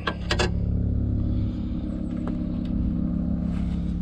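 Steady low hum of an idling vehicle engine, with a couple of sharp clicks near the start as the oil dipstick is drawn out of its tube.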